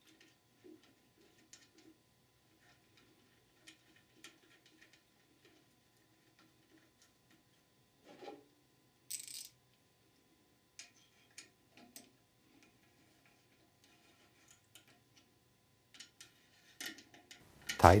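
Faint, irregular metallic clicks and ticks of a ratchet with a Torx bit turning down the bolts of a steel access cover on a transmission case, with a brief scrape partway through.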